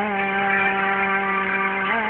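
A woman holding one long sung note over an instrumental karaoke backing track, stepping up to a slightly higher held note near the end.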